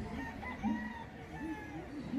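Several roosters crowing over one another, with chickens clucking.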